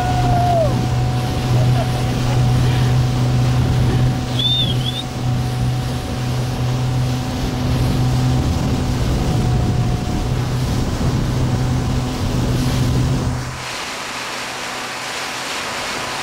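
Speedboat's outboard engine running steadily at speed while towing a water skier, over rushing water from the wake and wind noise. About two and a half seconds before the end, the engine's low drone drops away and the sound gets quieter.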